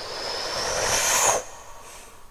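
A rising whoosh that swells steadily, with a faint high tone climbing in pitch, and cuts off abruptly a little over a second in, leaving a fading tail.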